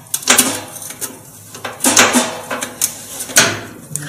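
Handling noise from work on a washing machine's heating element terminal and wiring: a few short scraping, clattering bursts of hands and a screwdriver on metal and plastic parts, about three of them loud.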